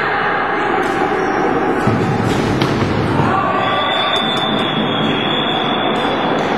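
Noise of a youth floorball match in a sports hall: voices and the knocks of sticks and ball. A steady high tone starts about three and a half seconds in and holds to the end.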